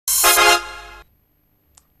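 A short synthesized chord from a TV news channel's logo sting. It is loud for about half a second, then fades away and is gone about a second in.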